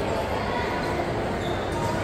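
Shopping-mall background noise: a steady low rumble with indistinct voices and faint tones mixed in.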